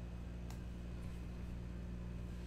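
Steady low hum of room noise, with a faint click of trading cards handled by hand about half a second in and a weaker one about a second in.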